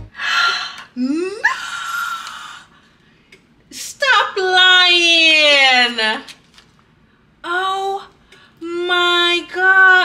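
A woman's wordless excited vocal sounds: a rising squeal, then one long falling cry, then shorter high cries near the end, all cries of delight.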